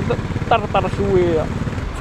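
Kawasaki Z250 motorcycle engine running steadily at low revs in slow traffic, with a man's voice talking over it for about a second near the middle.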